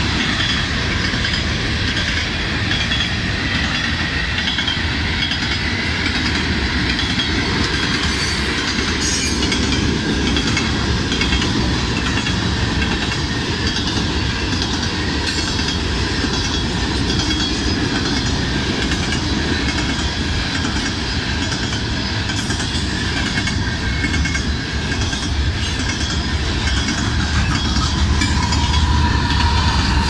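Coal hopper cars of a CSX freight train rolling past at a grade crossing, with a steady rumble and the clickety-clack of wheels over the rail joints. It grows louder near the end as a locomotive in the middle of the train comes by.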